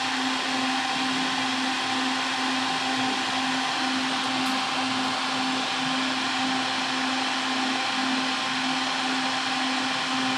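A benchtop solder fume extractor fan running steadily: an even whir with a constant low hum under it.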